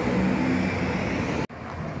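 Street traffic with a car's engine running as it drives through a junction, a low hum over road and tyre noise. About one and a half seconds in the sound cuts off abruptly and gives way to quieter traffic.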